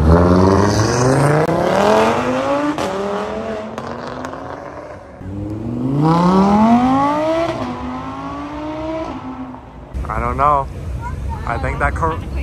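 Cars accelerating hard past a crowd, one after another, each engine rising steadily in pitch as it revs up: a sedan in the first few seconds, then an Audi R8 supercar from about five seconds in, its revs climbing and then holding. Voices whooping from the crowd near the end.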